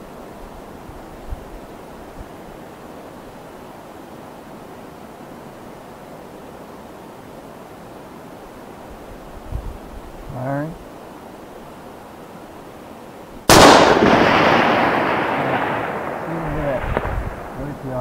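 A custom .308 Winchester rifle fires a single shot about thirteen and a half seconds in: a sharp report followed by a long echo that dies away over about four seconds.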